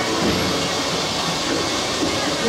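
Dark-ride car rolling along its track through the show building: a steady noise with no music or voices over it.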